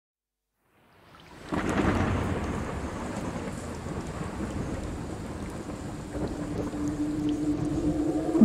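Thunder and rain: a rumble swells in about a second in, breaks loudly about half a second later and then rolls on steadily with the rain. A faint held musical note enters near the end.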